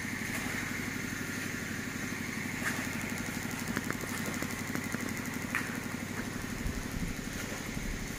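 A small engine idling steadily, with a few faint clicks.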